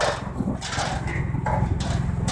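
A steady low mechanical drone, with a few short knocks and clatters over it.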